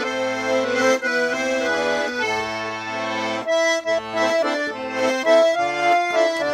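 Four-voice Tula garmon (Russian button accordion) in C major being played: a melody over bass notes and chords. The chords are held in the first half, then the notes become shorter and quicker from about halfway.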